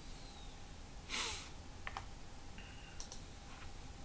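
A few quiet clicks from a laptop's keys or trackpad during web browsing, with a short breath about a second in.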